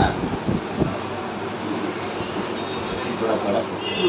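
Steady, even background noise, with a few faint snatches of speech near the start and about three seconds in.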